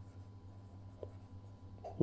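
Faint stylus strokes on a tablet screen as a word is handwritten, with one small tick about a second in, over a low steady hum.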